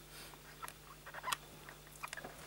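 A few faint, small clicks and rustles in a quiet room, the sharpest just past the middle.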